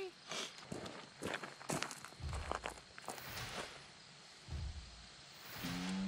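Footsteps on gravelly dirt: a run of short, irregular steps over the first three or four seconds, then quieter.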